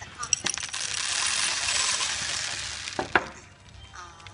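Small hard objects clinking and rattling together for about two seconds, with a few sharp clicks at the start and two louder clicks about three seconds in.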